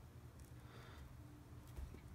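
Near silence: room tone, with a few faint soft rustles of paracord being handled.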